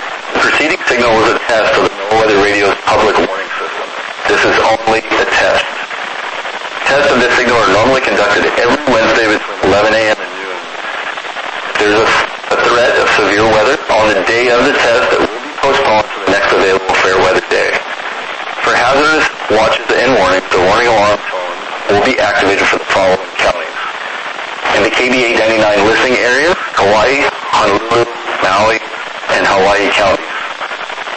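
A weather radio broadcast: a voice reading a forecast, heard through a radio receiver with a noisy hiss between phrases.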